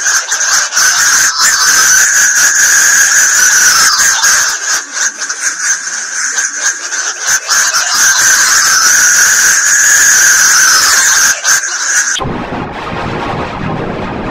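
Electronically distorted logo soundtrack: a loud, steady high-pitched squeal shot through with crackling clicks. About twelve seconds in it cuts off suddenly and gives way to a quieter, noisy rushing sound.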